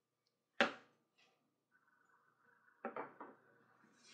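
Handling noise from an axe and rawhide lace being worked on a workbench: one sharp knock about half a second in, then a few softer clicks and taps near the end.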